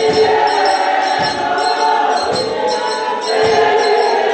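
A congregation of women singing a Xhosa hymn together as a choir, over a regular beat of sharp strokes a little under two a second.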